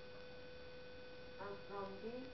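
Steady electrical hum, a tone near 500 Hz with fainter higher tones above it, over a low hiss; a voice speaks two words briefly near the end.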